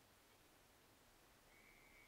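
Faint umpire's whistle, a single steady high note starting about one and a half seconds in.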